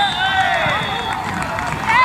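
Several high-pitched voices shouting across a football pitch, loudest at the start and again at the end.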